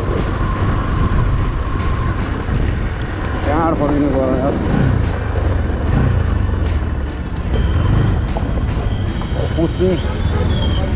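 Motorcycle running at riding speed, its engine under a steady, loud rush of wind noise on the bike-mounted microphone. A voice is heard briefly about three and a half seconds in.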